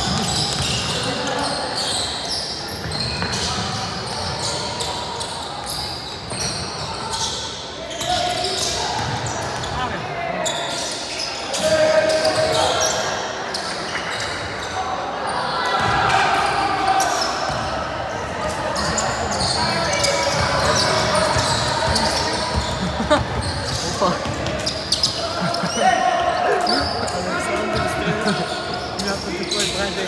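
Basketball dribbling and bouncing on a hardwood court during play, with indistinct voices of players and spectators echoing in a sports hall.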